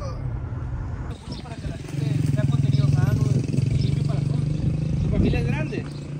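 Car driving along a highway, heard from inside the cabin as a steady road and engine noise. A little after a second in, the sound changes to a louder steady engine hum with faint voices over it.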